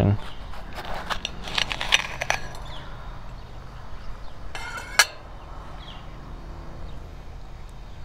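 Kitchen knife cutting through a pepper on a ceramic plate: a run of clicks and scrapes as the blade meets the plate, then a short scrape ending in a sharp click about five seconds in.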